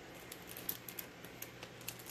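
Scissors working at the wrapping of a small cardboard box: a few faint, scattered clicks and snips.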